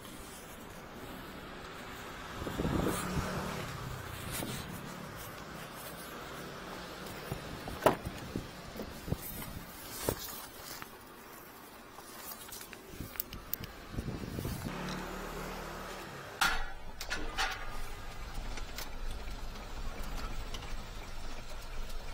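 Work-truck noises: scattered knocks and clicks of doors and gear, with one sharp bang about eight seconds in. From about two-thirds of the way through, the truck's engine runs with a low steady rumble.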